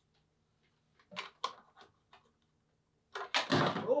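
A small plastic security camera's magnetic base is handled against a metal electrical box, making a few light knocks and clicks about a second in. Near the end comes a louder scraping clatter as the magnet fails to hold and the camera comes off the box.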